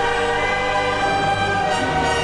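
Orchestra and choir holding loud sustained chords, the harmony shifting near the end.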